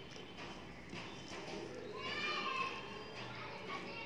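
Close-up chewing and lip-smacking clicks of someone eating rice by hand, fingers squelching the rice and dal on a steel plate. About halfway through, a high-pitched voice sounds briefly, under a second, over the eating.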